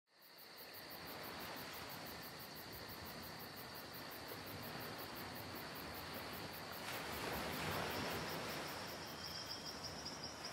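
Faint insect chirring: a steady high trill with fast, even pulses over a soft hiss, the hiss swelling a little about seven seconds in.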